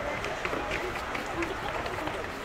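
Footsteps clicking on stone paving, roughly four steps a second, with people talking in the background.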